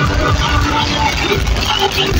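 Loud live gospel music through a PA system, heavy in bass.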